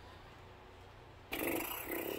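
Faint room tone, then about a second and a half in a man's drawn-out, breathy 'uh' of hesitation.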